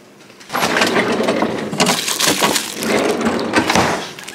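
Clear plastic bag crinkling and crackling as it is handled, starting about half a second in and continuing in a dense, irregular run of crackles.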